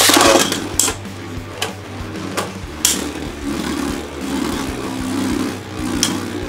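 Two Beyblade Burst spinning tops launched into a plastic stadium: a loud rush as they are ripped off their launchers at the start, then a steady whirring as they spin in the dish. Several sharp clacks mark where they strike each other, about one a second for the first three seconds.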